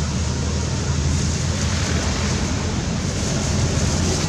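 Steady outdoor background noise: a continuous rumble and hiss with a faint low hum underneath and no distinct events.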